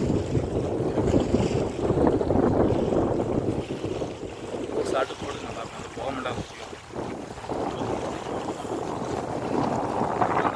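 Strong wind buffeting the microphone in gusts, over choppy reservoir water lapping at the shore.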